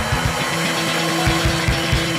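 Live band playing: a fast run of low drum beats under long held guitar notes.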